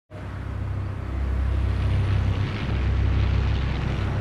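A low, steady engine rumble that rises in over the first second or so and then holds, with a fainter hiss of noise above it.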